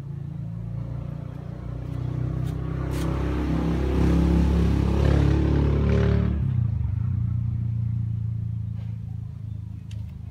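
A motor vehicle engine running, growing louder from about a second in, loudest around the middle, then dropping back abruptly to a steady low hum.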